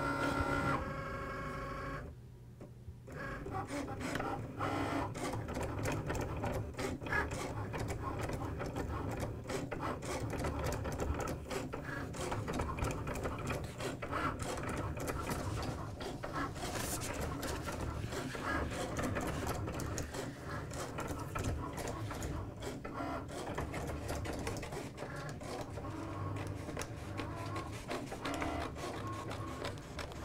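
A Cricut electronic cutting machine cutting a sheet of blue vinyl: its motors whir in quick, stuttering runs as the blade carriage and mat shuttle back and forth, settling into a steady run about three seconds in.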